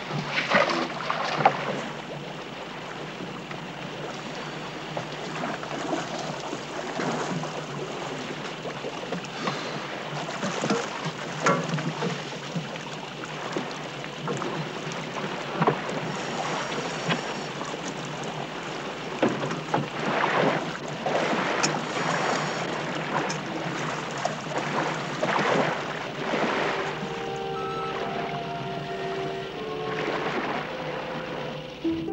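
Open-air sea ambience beside a boat: wind on the microphone and water splashing, with irregular knocks and splashes as scuba tanks are handed down from the deck to divers in the water. A few held music notes come in near the end.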